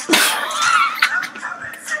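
A sudden loud, high-pitched vocal outburst lasting about a second, over background music.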